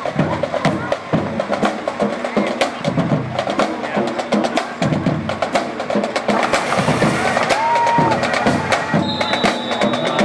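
Marching band playing in a parade, with rapid snare drum strokes over brass.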